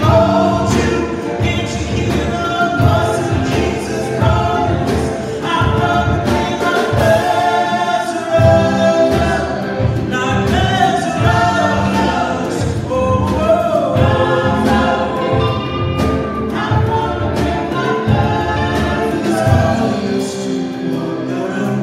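Live worship band playing a song: several voices singing together over acoustic guitar, electric bass and a drum kit keeping a steady beat.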